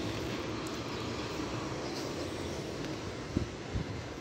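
Steady outdoor rush of wind and distant urban traffic, with a couple of brief low wind bumps on the phone's microphone near the end.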